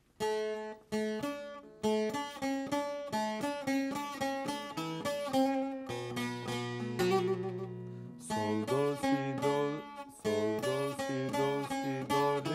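Bağlama (long-necked Turkish saz) played solo: a plucked melody of quick single notes with ringing strings, a few lower notes held for a moment in the middle, and brief breaks about eight and ten seconds in.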